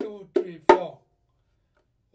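Bongos played by hand in a counted one-bar rhythm cell: two soft ghost-note strokes on beats two and three, then a sharp accented stroke on the small drum on beat four, under a second in.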